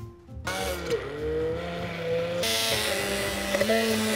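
Handheld immersion blender running in a plastic jug, whipping goat cheese, water and olive oil into a foamy mousse. The motor starts about half a second in, then turns brighter and slightly higher in pitch about halfway through.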